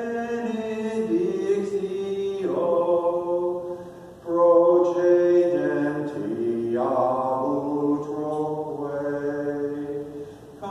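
Slow, chant-like sacred singing: long held notes that move in steps, with a short break between phrases about four seconds in.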